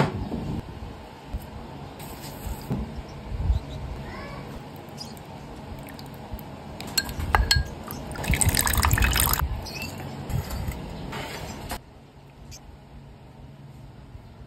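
Kitchen preparation sounds: a bowl set down on a wooden board with a knock, then a spoon clinking against a small glass bowl while a white starch slurry is mixed and liquid is poured or stirred. The liquid sound is loudest for a second or so past the middle.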